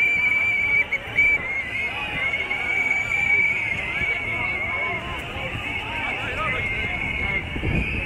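Crowd of protest marchers on a street: many voices talking at once, over a high, steady, wavering whistle-like tone.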